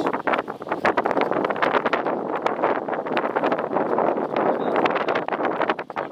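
Wind buffeting the phone's microphone: a loud, ragged rushing noise with irregular gusty spikes.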